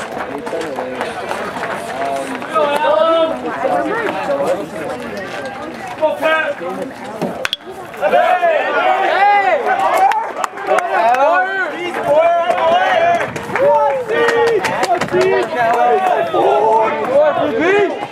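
Several spectators' voices talking and calling out close by, overlapping, louder and busier from about eight seconds in, with a single sharp crack about seven and a half seconds in.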